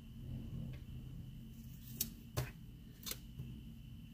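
Faint paper-handling sounds of a sticker being pressed and smoothed onto a spiral-bound paper planner page, with three short, sharp clicks in the second half, over a low steady hum.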